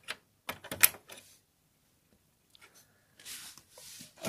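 Sharp plastic clicks and knocks of a SATA cable connector being pushed into and worked in a motherboard's SATA port, the loudest a little under a second in. A soft rubbing rustle of handling follows near the end.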